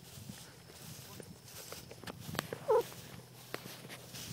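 Footsteps and rustling through tall grass, with scattered light clicks. About two and three-quarter seconds in there is one short call, the loudest sound here, just after a sharp click.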